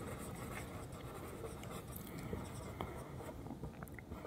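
Marker pen writing on a whiteboard: a run of faint strokes with light taps as letters are formed.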